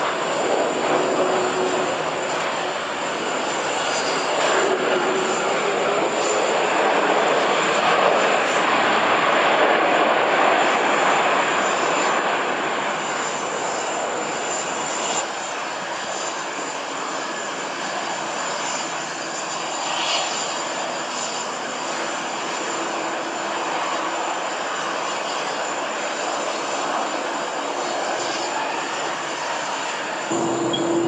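Jet engines of an Airbus A330 airliner rolling out after landing and then taxiing: a steady jet roar that swells to its loudest about eight to ten seconds in, then eases to a lower, even level.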